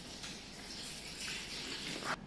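A steady rushing hiss, like running water, that stops suddenly at the end.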